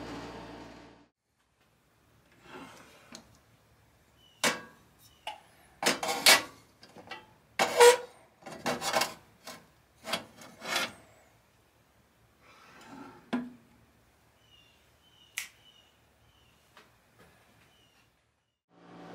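A steel knife blade is handled and set on the wire rack of a small toaster oven to temper, with the oven door and dials being worked. There is a run of sharp metal clanks, knocks and scrapes, then a few lighter clicks.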